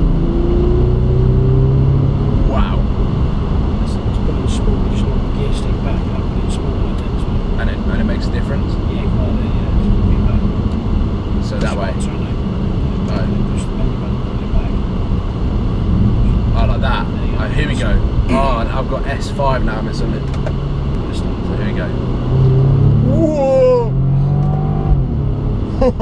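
Bentley W12 engine pulling hard under full throttle, heard from inside the cabin: the engine note rises in the first couple of seconds, then holds a steady drone under road and wind noise.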